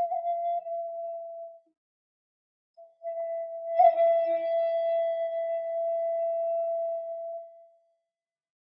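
Flute music played as slow, long held notes: one note fades out under two seconds in, and after a short silence a second long held note sounds from about three seconds until shortly before the end.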